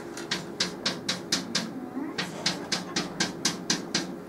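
Chalk on a blackboard drawing a row of short tick marks in quick strokes, about four to five a second, with a brief break about halfway.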